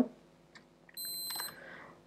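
A short, high-pitched electronic beep about a second in, lasting about half a second, with a few faint keyboard clicks.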